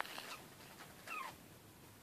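A young puppy gives a single short whimper about a second in, a high thin whine that falls slightly in pitch.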